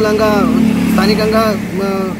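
A man speaking, with road traffic rumbling faintly in the background, a little stronger in the first second.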